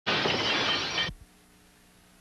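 A loud burst of static hiss from the start of a videotape recording, lasting about a second and cutting off abruptly, followed by near silence with a faint steady low hum.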